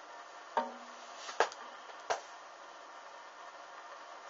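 Bra fabric burning at a small flame, giving three sharp pops or snaps over a steady background hiss, the second one the loudest.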